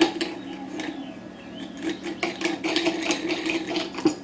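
Small scattered metal clicks and scraping as a 3-inch cutoff wheel is seated on its holder and the retaining screw is turned in by hand, over a steady low hum.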